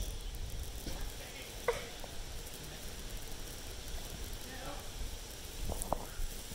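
Quiet backyard ambience: a steady faint hiss, with a brief faint high sound a little under two seconds in.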